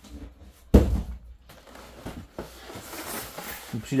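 A polystyrene shipping box being handled: one sharp thump a little under a second in, then quieter scraping and handling noises.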